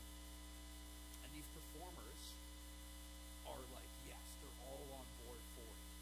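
Steady electrical mains hum from the sound system, the loudest sound, with faint, indistinct speech underneath at two points.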